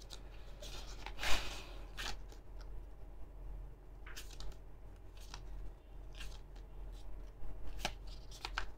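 Pages of a small paperback guidebook being flipped through by hand: a series of brief, faint paper rustles, the loudest a little over a second in.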